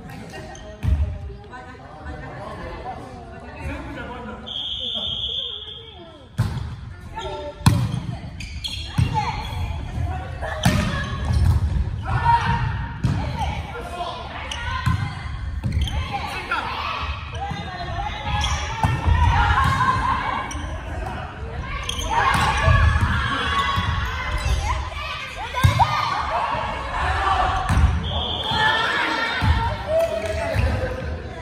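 Volleyball being struck in a reverberant sports hall, sharp hits every few seconds, with players calling and shouting during the rally. A short high-pitched tone sounds twice, once early and once near the end.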